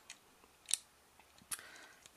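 A few faint, short, sharp clicks, with quiet in between.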